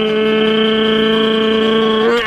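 A person's voice holding one long, steady sung note.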